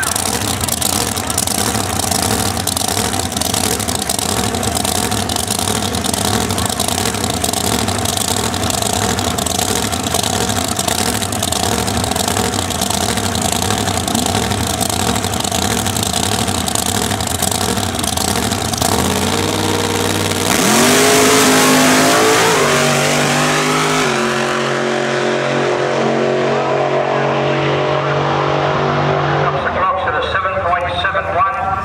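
Supercharged drag car engine idling lumpily at the start line, then launching about two-thirds of the way through: revs climb sharply, with two gear changes as the car pulls away down the strip and its sound thins out with distance.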